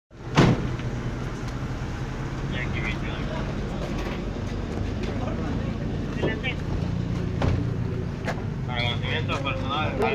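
A vehicle engine idling nearby, a steady low hum, with one sharp knock near the start and brief snatches of people talking.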